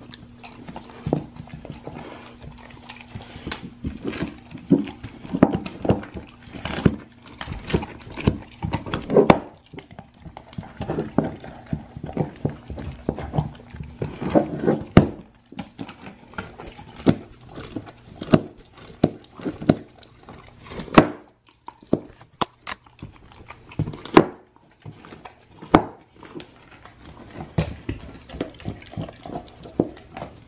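Great Dane chewing and gnawing a raw deer shank: irregular wet chewing with crunches and several sharp, loud cracks of bone in the second half.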